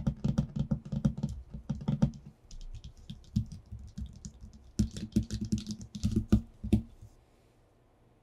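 Fingertips tapping rapidly on a sheet of paper over a tabletop, in quick flurries that sound like typing, with a lighter, sparser patch in the middle. The tapping stops about seven seconds in.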